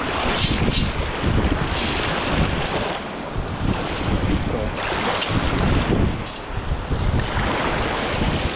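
Wind buffeting the microphone over the wash of small waves in shallow water, with a few brief sharp ticks scattered through.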